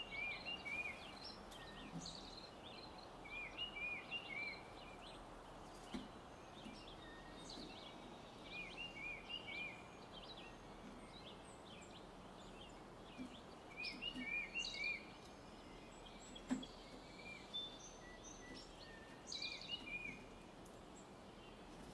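Small birds calling faintly over a steady outdoor hiss: runs of three or four short arched chirps recur every few seconds, mixed with scattered higher notes. A few soft knocks stand out, the sharpest about sixteen seconds in.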